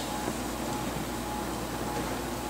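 Steady room tone between spoken phrases: an even hiss with a low hum beneath it and nothing else standing out.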